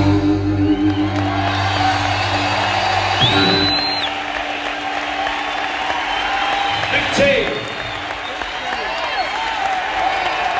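A live rock band's closing chord rings out and stops about three seconds in, giving way to the audience cheering and applauding. A brief high whistle-like tone sounds just as the chord ends.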